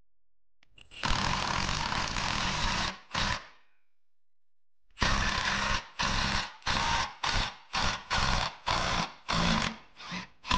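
A power wrench on a socket extension runs in bursts on a bolt of the upturned engine. There is one run of about two seconds starting about a second in, then a short burst, then from halfway on about eight quick pulses, between one and two a second.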